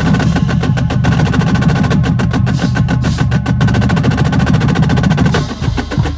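Marching drumline of snare drums, tenor drums and bass drums playing a roll-based warm-up exercise in unison, with dense rapid strokes over the bass drums. The playing briefly drops back and changes texture near the end.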